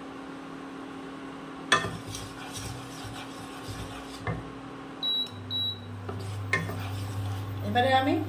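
A wooden spatula knocks and scrapes in a nonstick kadai of melted ghee, the sharpest knock about two seconds in. An induction cooktop then beeps twice as its power is turned down from 1000 to 700 watts, and a deeper steady hum joins the cooktop's constant hum.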